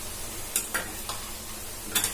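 Pakoras frying in hot oil in a kadhai, a steady sizzle, with a few light clicks of a utensil against the pan.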